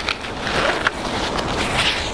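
A camera trap's webbing strap being pulled through its buckle and off a tree trunk: a rustling, scraping slide with a few short ticks.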